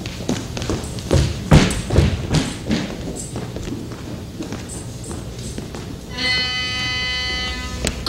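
Footsteps and knocks on the stage floor, then about six seconds in a horn sounds one long, steady note for under two seconds. It is the huntsmen's horn call ordered to wake the sleepers.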